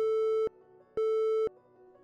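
Telephone busy tone after the call is hung up: two beeps at one steady pitch, half a second on and half a second off, the sign that the line has been disconnected.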